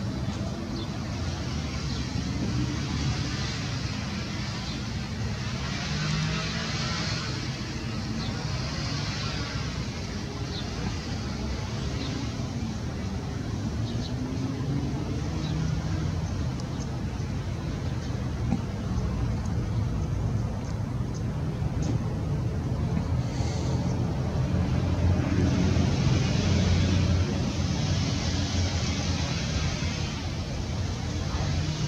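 Steady low rumble of vehicle engines, with slow rising and falling pitch in the middle, swelling louder for a few seconds near the end.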